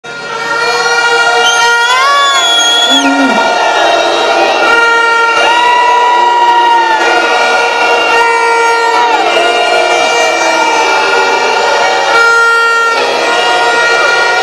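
Protest crowd sounding air horns and whistles: many overlapping held tones, some sliding in pitch and breaking off every second or two, over loud crowd noise.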